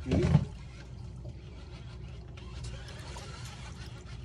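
A short burst of voice in the first half-second, then a steady low rumble aboard a boat.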